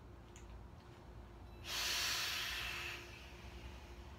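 A person blowing out a big lungful of vape cloud: a sudden breathy hiss about a second and a half in, lasting about a second and then tailing off.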